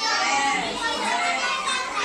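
Many young children talking and calling out at once, their voices overlapping continuously.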